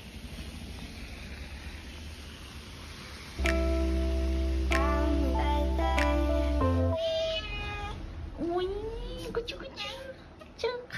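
Background music with sustained, stepping notes that come in loudly about three and a half seconds in. Near the end a cat meows a few times, each a rising-then-falling call.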